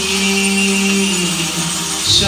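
Liturgical chant: a long held sung note that steps down slightly in pitch about halfway through.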